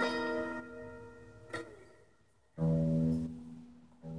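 Electric guitar: a chord rings on and fades away, there is a short pause, then a new chord is struck about two and a half seconds in and left to ring.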